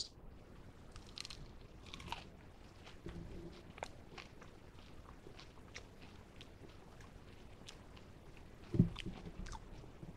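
A person biting and chewing a crispy fried breaded chicken nugget close to a microphone: faint, irregular crunches and crackles of the breading. A brief louder low sound comes near the end.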